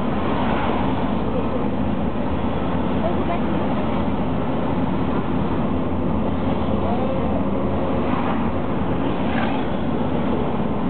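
Steady engine and road noise heard inside the cabin of a moving Mercedes taxi, a constant low rumble.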